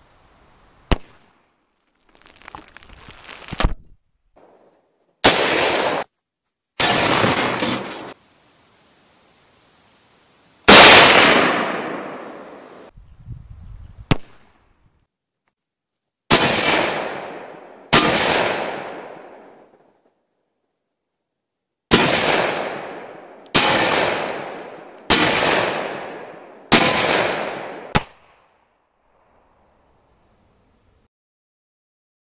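Gunshots, about a dozen, each a sharp crack followed by a long dying echo. The loudest comes about a third of the way in, and near the end five shots follow one another about a second and a half apart.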